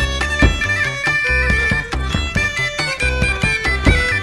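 Hungarian folk-band music playing an instrumental stretch, with held high melody notes over a steady low beat.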